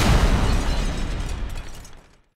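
A deep, explosion-like boom of bursting flame, its low rumble dying away over about two seconds.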